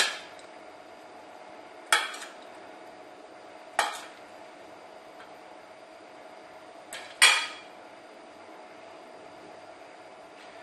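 A metal spoon clinking against a stainless steel bowl about four times, a couple of seconds apart, the last the loudest, as filling is scooped out of the bowl.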